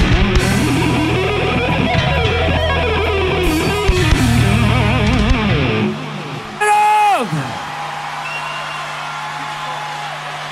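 Live rock band: an electric guitar lead with wide wavering bends over bass and drums, stopping about six seconds in. A moment later a loud note dives steeply down in pitch, then only a faint held tone and amplifier hum remain.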